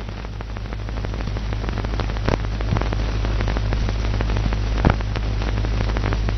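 Steady hiss with a low hum and scattered crackles and clicks, growing a little louder over the first second: the background noise of a worn old film soundtrack between lines of dialogue.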